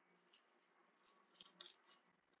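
Near silence: room tone, with a few very faint short ticks near the end.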